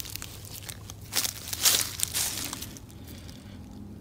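Dry fallen leaves crunching and rustling underfoot, in irregular crackling bursts that are loudest between about one and two seconds in.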